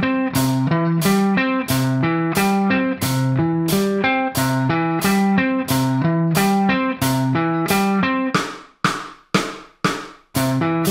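Electric guitar playing alternate-picked triad arpeggios, one note per string, in an even run of about four notes a second. Near the end a few notes are cut short with brief silences between them.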